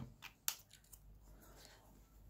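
A few light clicks and taps of small objects being handled on a desk, the sharpest about half a second in, followed by fainter ones.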